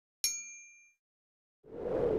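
Notification-bell 'ding' sound effect: one bright metallic strike with ringing tones that fade within about a second, followed near the end by a swelling whoosh.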